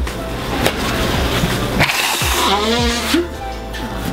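Nose blowing into paper towels, a noisy rush of air loudest about two seconds in, over steady background music.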